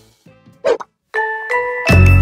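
Editing sound effects over a transition. Faint background music dies away, and a short, loud sound effect comes about half a second in. After a brief gap, two chime-like dings ring out, and loud music starts right at the end.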